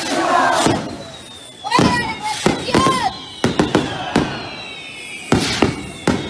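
Fireworks going off: a string of sharp bangs, some in quick pairs, with long whistles falling slowly in pitch, over a crowd shouting and cheering.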